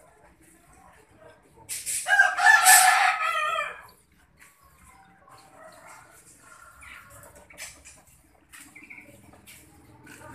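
A rooster crows once, a loud call of about two seconds starting just under two seconds in. Faint scattered clicks and knocks follow.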